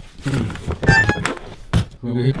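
Knocks and clatter of the accordion and its detached treble register-switch bar being handled and set down, with a short ringing tone about halfway through and one sharp knock near the end.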